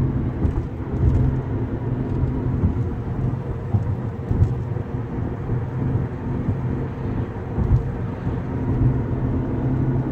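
Road and engine noise heard from inside a moving car's cabin: a steady low rumble with a faint hum.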